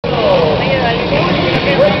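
Several quad bike (ATV) engines revving and racing, their pitch rising and falling, in a large indoor arena, with people's voices mixed in.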